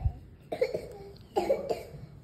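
A person coughing twice, short dry coughs about half a second and a second and a half in, after a brief low thump at the very start.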